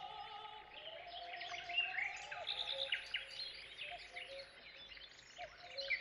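Songbirds chirping and trilling in quick, overlapping calls, with a faint held musical note underneath for the first couple of seconds.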